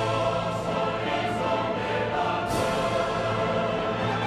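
Orchestra and chorus performing operatic music in full, sustained chords, with a loud accented chord about two and a half seconds in.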